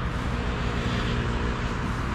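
Steady low rumble of distant road traffic, with a faint, even engine hum through the middle.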